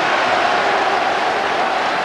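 Football stadium crowd cheering and applauding at the final whistle, a steady wash of noise celebrating the home side's win.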